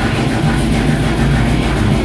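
A death metal band playing live: heavily distorted, down-tuned guitars and bass over drums, with quick even drum strokes at about ten a second.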